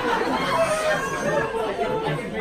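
Indistinct, overlapping chatter of several voices talking at once.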